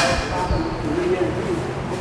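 A person's voice holding a drawn-out, wavering sound, just after a sharp click right at the start.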